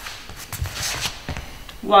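Footsteps and shoe scuffs on a sports hall floor as two people step in close to each other, a few light knocks and a brief scuff. A voice counts "one" at the very end.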